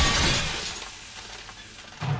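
The tail of a crash: glass shattering and debris falling. It is loud at first and dies away within the first second, leaving faint scattered tinkling.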